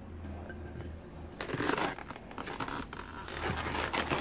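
Inflated latex twisting balloons being handled: the balloons rub and squeak against each other and the hands in short, irregular scratchy noises.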